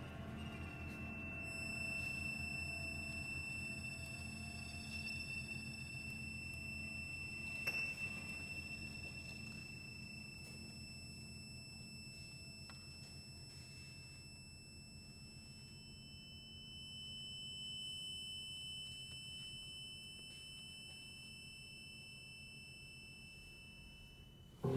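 Very soft sustained music from a chamber ensemble: low held tones under a thin, steady high tone. It slowly fades, with one faint click about eight seconds in.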